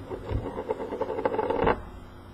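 Handling noise of small items being moved aside by hand: a rapid run of clicks, knocks and rattles that stops shortly before the end.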